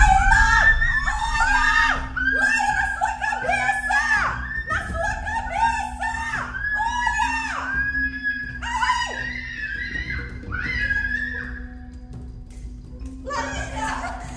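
Background music with a held low note, over a frightened girl's repeated high-pitched screams that thin out near the end.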